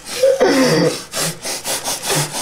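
Toothbrushes scrubbing teeth close to the microphone, a run of rasping strokes, with a muffled voice sound from a full mouth in the first second.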